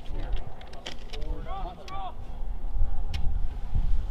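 Steady low outdoor rumble with a distant voice calling briefly about a second and a half in, and a few faint clicks.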